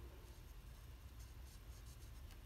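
Faint scratching of a Stampin' Blends alcohol marker's tip stroking across cardstock, in short strokes a little after a second in, over a low steady room hum.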